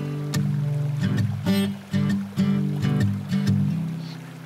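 Background music: held low notes that change every half second or so, with light percussive hits.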